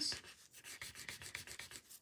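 Pencil tip rubbing back and forth on the paper tile in quick, faint strokes, softening and blending the edges of the graphite shading.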